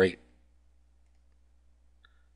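Near silence with a faint steady low hum, after the end of a spoken word, and one faint computer-mouse click right at the end as a menu is opened.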